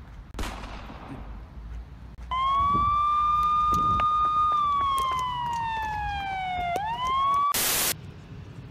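A siren wailing: a loud, steady high tone starts abruptly, slides slowly down in pitch, then swings quickly back up. It is cut off near the end by a short, loud burst of noise.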